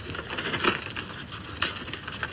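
Pen scratching on a spiral notepad as words are written: a run of quick, uneven strokes, the loudest about two-thirds of a second in and again a little past one and a half seconds.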